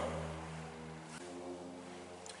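Faint steady mechanical hum: a low drone with a few steady tones. The deepest part drops away about a second in, and the tones shift slightly just after.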